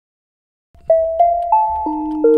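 Software instrument notes played from a MIDI keyboard. A short melody of about four separate notes starts about a second in, each with a sharp start and a ringing tail, over a low rumble.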